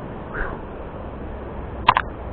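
Steady low outdoor background noise, with two sharp clicks close together near the end.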